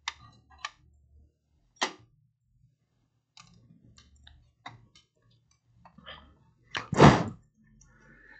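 Scattered sharp clicks and knocks of electronic parts and wires being handled on a workbench, then one louder, longer thunk about seven seconds in.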